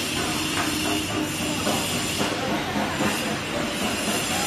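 HY-1300ZST paper slitter-rewinder running, with kraft paper feeding over its rollers and winding onto rolls. It makes a steady mechanical running noise with a faint hum and a few light clicks.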